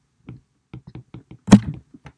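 A stylus tapping and ticking on a tablet's glass screen during handwriting: a run of short, light taps, with one much louder knock about one and a half seconds in.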